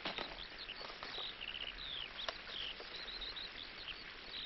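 Small birds chirping: a scatter of short, high twitters and chirps over a faint background hiss.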